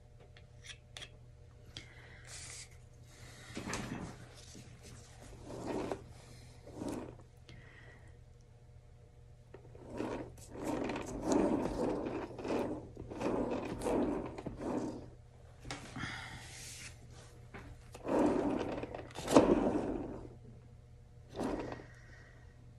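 Plastic swipe tool dragged through wet acrylic paint on a canvas: a series of rubbing, scraping strokes, sparse at first, then coming close together and louder in the second half.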